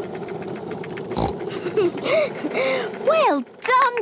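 Cartoon skateboard rolling along a path: a steady rumble of small wheels, with a knock about a second in, stopping about three and a half seconds in. Short rising-and-falling voice sounds, a child's delighted exclaiming, come over the rolling near the end.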